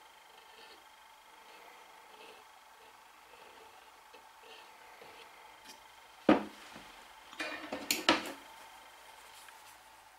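Quiet handling at a workbench while glue is applied to a wooden joint held in G-clamps. About six seconds in there is one sharp knock, then about a second later a short clatter of knocks and clicks as the wood and clamps are handled.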